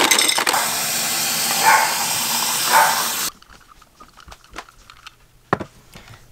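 A refrigerator door dispenser dropping ice into a glass mason jar, a steady rush with a couple of louder clatters, which stops abruptly about three seconds in. Faint clicks and knocks of the jar being handled follow.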